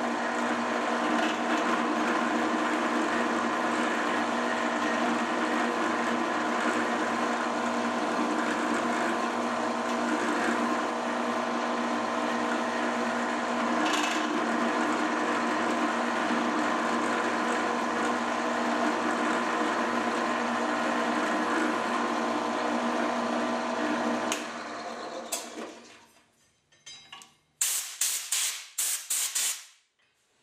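Drill press motor and spindle running steadily while a center drill works holes in a metal block; about 24 seconds in the motor is switched off and spins down. Near the end come several sharp metallic clatters from the part and vise being handled.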